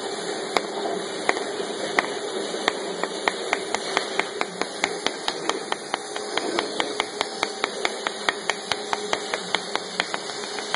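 Industrial cutting machine running over a slatted cutting bed: a steady hiss and hum under a train of sharp clicks, about one a second at first, quickening to about three a second a few seconds in.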